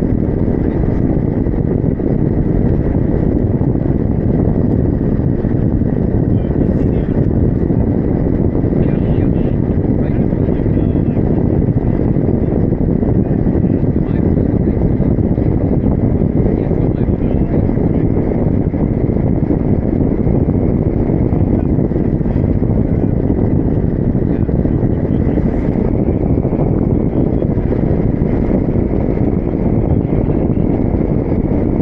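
Steady, loud wind rushing over the microphone of a camera riding on a paraglider wing in flight, with a faint thin steady tone running under it.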